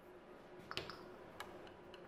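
Two faint metal clicks, about three quarters of a second in and again about half a second later, from a hex key and filler screw being handled at the gearbox fill hole of a drill press.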